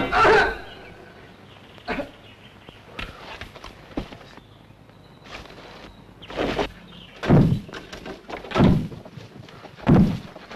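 Irregular thumps, knocks and scuffs of a man climbing an ivy-covered stone wall and clambering in through a window. They are a few light knocks at first, then heavier and louder thumps about a second apart in the second half.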